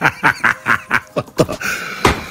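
A person laughing in a run of short, rhythmic bursts, about four a second, which stops about one and a half seconds in and gives way to a breath.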